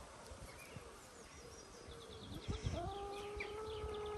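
Free-range brown hens foraging, with faint chirps and ticks at first. About two-thirds of the way in, a hen starts a long, steady, slightly falling drawn-out call that is still going at the end.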